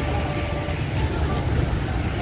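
Wind buffeting an outdoor microphone: a steady, irregular low rumble.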